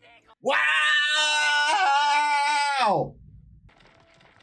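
A man's long, drawn-out shout of "Wow!" in amazement, held on one loud pitch for about two and a half seconds and dropping away at the end.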